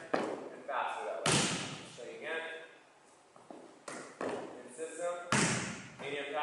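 Volleyballs striking and bouncing on a hardwood gym floor during setting drills: two loud thuds, about a second in and near the end, with a few smaller taps between, each ringing in the echo of a large gym.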